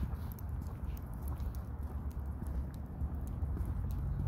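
Footsteps on asphalt, a quick irregular run of hard footfalls over a steady low rumble.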